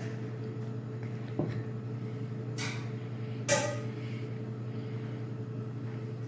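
A man sipping a young, sharp whisky, with a faint knock about a second and a half in and two short breathy sounds around three seconds in, the second louder. A steady low hum runs underneath.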